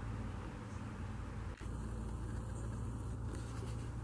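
Steady low hum under a faint even hiss, broken off briefly about one and a half seconds in.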